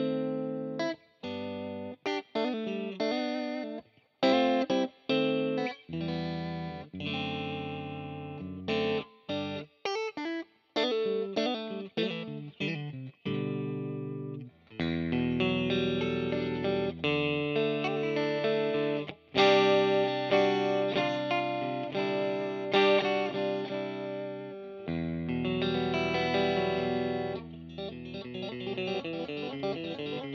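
Fender Custom Shop 1960 Stratocaster Relic electric guitar played through an amp on the neck-and-middle pickup setting (selector position four). Short, choppy notes and chords for about the first half, then longer ringing chords, with quicker picked notes near the end.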